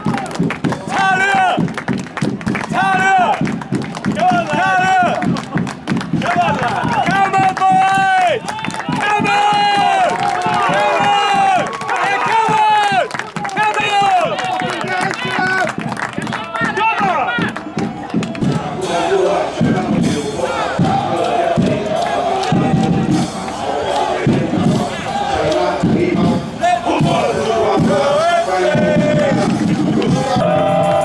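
Football supporters chanting and shouting together in unison, to a beat. About two-thirds of the way through the chant changes to a lower, denser one.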